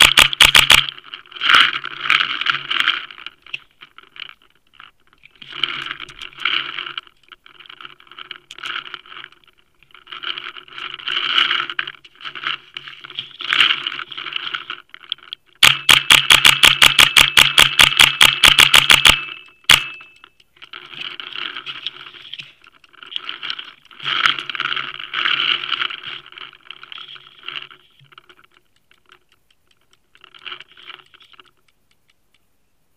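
Paintball marker firing: a few quick shots at the start, then a long rapid string of about eight shots a second for some three seconds past the middle, then one more shot. Between the strings come intermittent rattling, whirring bursts.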